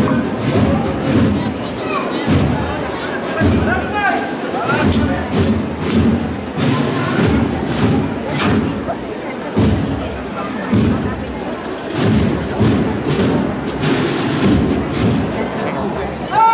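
Processional band playing a march, its bass drum striking about once every second and a bit, under a crowd's chatter.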